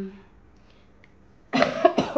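A woman coughing, several quick coughs in a burst about a second and a half in, with her hands over her mouth and nose; she is ill with a cough.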